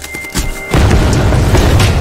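Intro-animation sound effect: a deep boom hits about three-quarters of a second in and is held loud, over electronic music, after a brief high tone.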